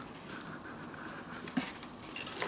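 Quiet handling of a handmade paper-and-cardboard trailer model: faint rustling of the paper as it is turned in the hands, with one small tap about one and a half seconds in.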